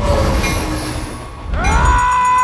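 Train running on the rails with a deep rumble and a thin high wheel squeal. About one and a half seconds in, a man's loud scream rises in and is held over it.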